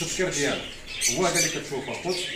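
Small caged birds chirping in short, high calls over a man's talking voice.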